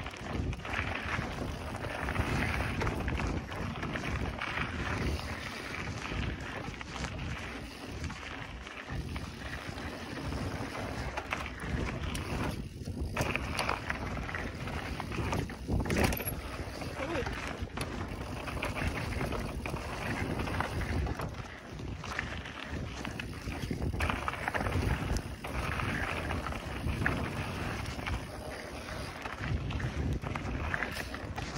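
Wind buffeting the microphone and mountain-bike tyres rolling fast over a dirt trail, with knocks and rattles from the bike over bumps; the sharpest jolt comes about halfway through.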